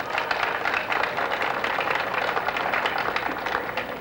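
An audience applauding: a dense patter of many hands clapping that eases off near the end.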